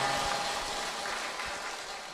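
Audience applause fading away steadily.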